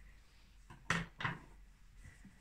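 Mostly quiet room with one short, soft handling sound about a second in, as hands move a stuffed crocheted figure on a table.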